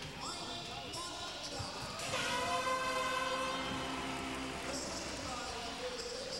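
Arena music with long held notes, loudest in the middle, over the hum of a crowd in a large, echoing hockey rink, with a voice mixed in.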